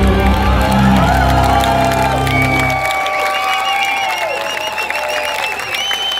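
Live rock band finishing a song: the full band with bass plays until it stops about three seconds in, leaving the last notes ringing. The crowd cheers, claps and whistles over the ending.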